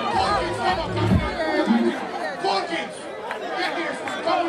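A dancehall performer's voice through a stage PA, with other voices around him; a heavy bass beat plays for about the first second and then drops out, leaving the voices.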